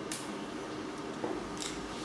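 Quiet room tone in a pause in the talk, picked up by a headset microphone, with a short hiss near the end: an intake of breath before speaking.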